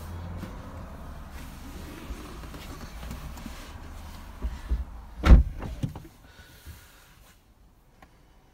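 A few light knocks, then a solid car door shutting about five seconds in. After it the steady outside rumble drops away to a quiet cabin.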